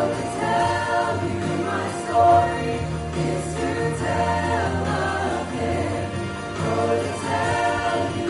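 Vocal ensemble singing a worship song in several-part harmony, with instrumental backing holding steady low notes underneath.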